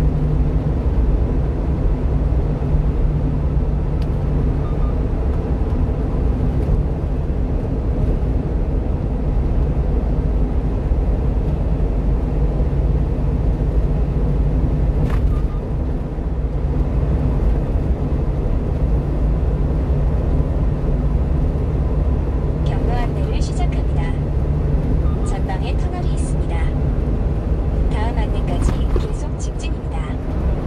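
Steady low road and engine rumble of a 1-ton truck driving at highway speed.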